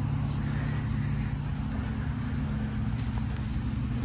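Steady low engine hum in the background, running without change.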